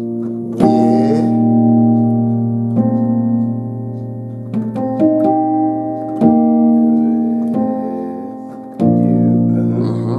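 Piano playing slow gospel chords, a new chord struck every one to two seconds and left to ring and fade, over a B-flat held low in the bass. The voicings move among B-flat, E-flat and F major chords.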